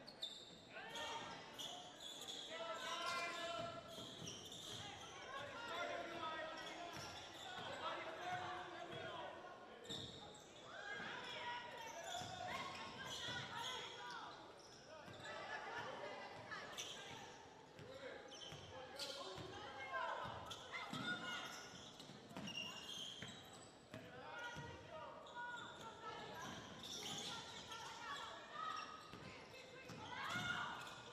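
A basketball being dribbled and bounced on a hardwood gym court, with repeated short knocks throughout. Indistinct voices of players and spectators are heard under it.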